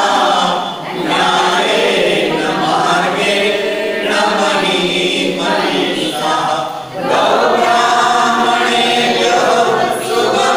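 A mixed group of men and women singing a devotional chant in unison, unaccompanied, in long phrases with short breaks for breath about a second in and near seven seconds.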